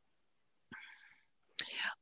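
Mostly silence, broken by two soft breaths from a woman: a faint one a little under a second in, and a louder one near the end.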